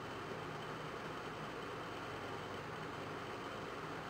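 Steady, faint hiss of room tone and recording noise with a low hum, unchanging throughout.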